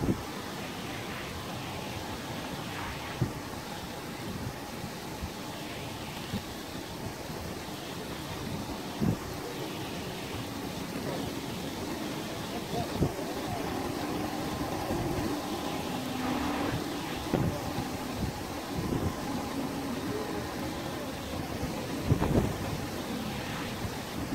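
Wind blowing over the microphone at the shore of open sea, with small gusty thumps over a steady rush of wind and water. A faint low hum comes in around the middle.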